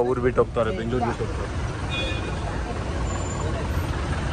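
Passenger minibus's engine and road noise heard from inside the moving cabin: a steady low rumble in traffic, with a voice briefly over it in the first second.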